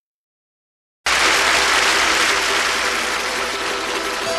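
Dead silence for about a second, then applause starts suddenly and slowly dies away, with a few soft held notes of music underneath.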